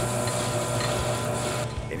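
Metal lathe cutting a spinning metal bar to make a bushing: a steady hissing scrape from the tool peeling off chips over the machine's low hum, the hiss cutting off near the end.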